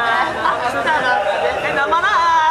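Several women talking over one another and laughing.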